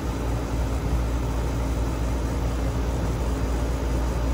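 New Lennox air-conditioning condenser running steadily: a continuous low compressor hum under the even rush of the condenser fan.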